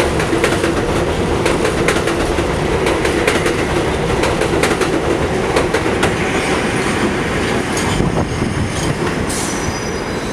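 A New York City Subway 7 train of R142A/R188 cars pulling out past the platform, its wheels clacking over the rail joints in quick, irregular clicks over a steady rumble. The clicks thin out after about six seconds as the last cars pass, and a thin high wheel squeal comes in near the end.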